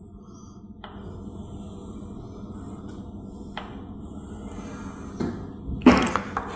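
Chalk drawing on a blackboard: two long scratchy strokes, one starting about a second in and the next about three and a half seconds in, over a low steady hum, with a short tap near the end.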